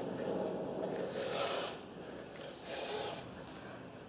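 A person breathing hard: a few sharp, hissing breaths about a second and a half apart, the first the longest.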